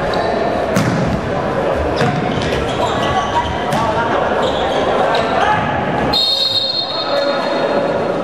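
Indoor futsal play in an echoing hall: a ball is kicked and bounces on the wooden floor with sharp knocks, over players and spectators shouting. About six seconds in comes a high shrill tone lasting over a second, a referee's whistle for a foul.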